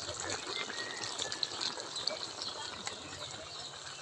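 A large wok of pork stew boiling over a wood fire: a steady bubbling hiss scattered with small pops.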